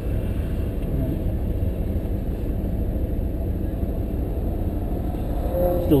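Lamborghini Gallardo's V10 engine running steadily without revving, heard from inside the cabin as an even low rumble.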